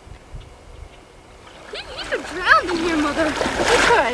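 Water splashing as a child wades quickly through knee-deep river water, loudest near the end, with children's voices calling and shouting over it.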